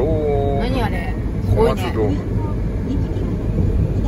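Steady low road and engine noise inside a moving car's cabin at highway speed, with a person talking over it for the first couple of seconds.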